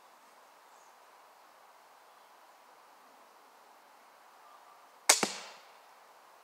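A crossbow fired once about five seconds in: a sharp snap of the string releasing the bolt, a second quick knock right after, and a short fading ring.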